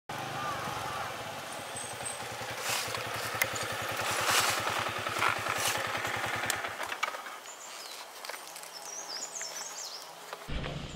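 A motorcycle engine running with an even, rapid low beat, then cutting off abruptly about seven seconds in.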